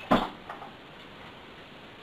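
A single sharp knock just after the start, then a fainter click about half a second in, followed by quiet room tone.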